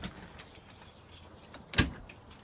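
A single sharp knock near the end, over a quiet bus interior.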